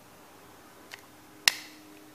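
Two small clicks from a spinning reel's bail-arm mount being pressed onto the rotor during reassembly: a faint one about a second in, then a sharp, louder click about halfway through.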